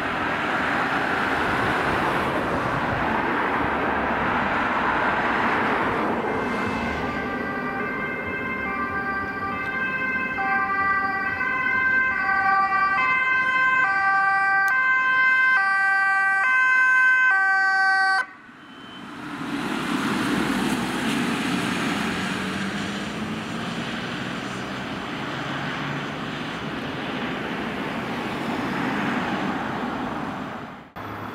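Ambulance two-tone siren alternating between a high and a low note, growing louder over about ten seconds before stopping abruptly. Road traffic passes before and after it.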